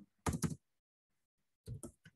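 Computer keyboard keys being typed: a short run of several keystrokes about a quarter second in, and another near the end.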